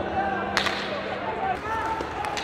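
Ice hockey play: a single sharp crack of a hockey stick striking the puck about half a second in, over the steady noise of the arena crowd.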